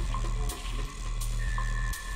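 Electronic dance music played from vinyl records on a DJ's turntables, with a steady deep bass, a sharp crisp hit about every three-quarters of a second and a held high tone over it.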